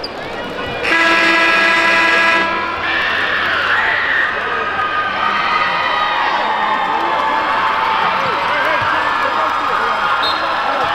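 An arena horn sounds once, a steady blare about a second and a half long, starting about a second in. Crowd murmur and scattered voices in the arena follow.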